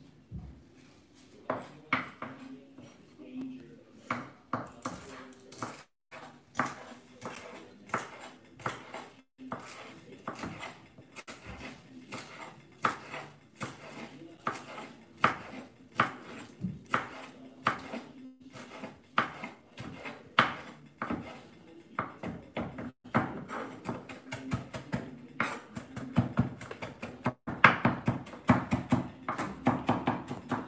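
Chef's knife chopping fresh parsley on a bamboo cutting board: repeated sharp knocks of the blade hitting the wood, about one or two a second, speeding up into a fast run of chops near the end.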